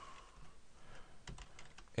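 Faint computer keyboard keystrokes as a short terminal command is typed and entered, with a few key clicks about a second and a half in.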